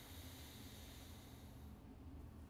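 A slow, faint exhalation through one nostril during alternate-nostril breathing: a soft airy hiss that stops near the end.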